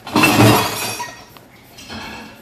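Cheese being rasped across a metal hand grater: one loud scraping stroke lasting about a second, then a short, fainter scrape near the end.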